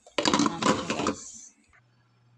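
Metal clattering and rattling for about a second as the oven is opened to reach the baking pan, then a low steady hum from the oven near the end.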